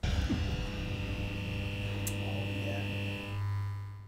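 Electric neon-sign buzz sound effect of a comedy show's logo intro. It starts suddenly as a loud, steady hum with a higher tone above it and gives a brief click about two seconds in. The higher tone stops after about three seconds, leaving a low hum that fades out.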